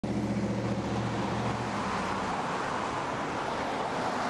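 Road traffic noise, a steady rush, with a low engine hum that drops away under two seconds in.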